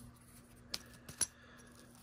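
Two light, sharp clicks about half a second apart as a ceramic processor package is set down among other chips on a table.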